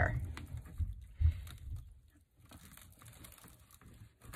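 Plastic deco mesh rustling and crinkling as it is pulled through a wire wreath frame, faint, with a louder rustle a little after one second, dying away about two seconds in.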